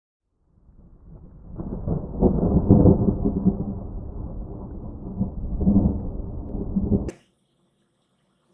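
Thunder rolling as a low rumble that builds in, swells twice and cuts off abruptly about seven seconds in.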